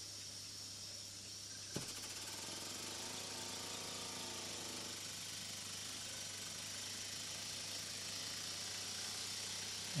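Tiny butane-fired Philcraft steam marine engine: the steady hiss of its gas burner, a click about two seconds in as the engine is turned by hand, and then a faint, fast running sound joining the hiss as the engine gets going. The engine is stiff from not having been steamed for a long time.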